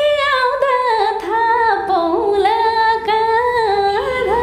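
A woman singing a slow melody unaccompanied, holding long notes that step between pitches with short glides.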